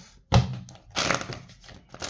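A sharp knock about a third of a second in, then rustling and scraping of a tarot deck being handled, with a second burst near the end.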